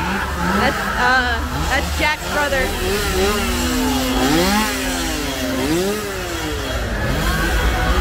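Chainsaw engine revved up and down over and over, its pitch rising and falling in waves, with a short steady hold near the middle.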